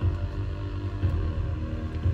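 Dream-pop band playing live: steady held chords over a deep, pulsing low end, with no vocals.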